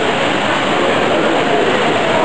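Hornby O gauge tinplate model train running on tinplate track: a loud, steady running noise.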